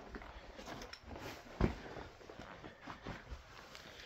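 Faint footsteps and handling noises, with one soft knock about one and a half seconds in.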